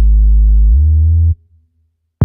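Deep synth bass note that steps up in pitch about three-quarters of a second in, then cuts off suddenly about a second and a half in.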